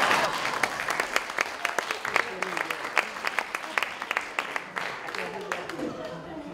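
Audience applause after a punchline, rising out of laughter at the start; the claps thin out and fade toward the end.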